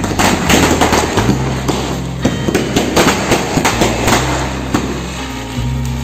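Background music with a steady bass line, over a rapid, irregular crackle from a ground firework spraying sparks. The crackling stops about five seconds in.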